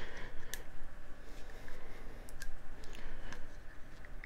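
A few faint, scattered clicks and taps of fingers handling a bare laptop-size hard drive and its metal casing.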